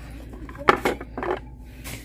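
Small framed wall plaques knocking against each other and a wire display rack as they are flipped through by hand. There are a few sharp clacks, the loudest about two-thirds of a second in.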